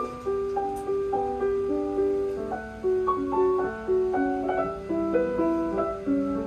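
Bechstein model L grand piano played solo: a melody of held, overlapping notes over sustained lower notes, a new note struck about twice a second.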